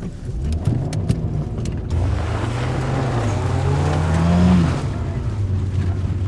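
Car engine accelerating: a short rise in pitch just after the start, then a steady climb for about three seconds that drops abruptly near the five-second mark, as at a gear change, and runs on at a lower, steadier note.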